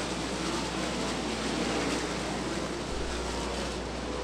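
A pack of winged sprint cars' 410 cubic-inch V8 engines running together at racing speed around a dirt oval: a steady, blended engine noise with no single car standing out.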